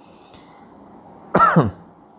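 A man coughs once, briefly, about a second and a half in.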